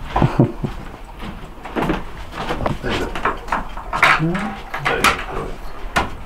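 Scattered knocks and clicks from a wooden wardrobe being handled, with brief indistinct voices.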